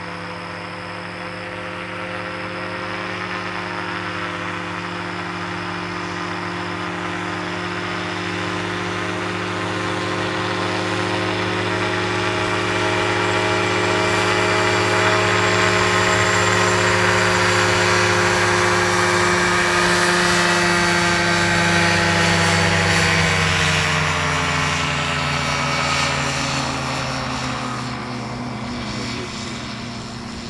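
Dominator gyroplane's engine and pusher propeller running at high power, growing steadily louder as it comes closer. About three-quarters of the way through, the engine note drops in pitch, and the sound then fades.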